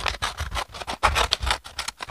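Scissors cutting through a sheet of paper in a quick run of snips, several a second.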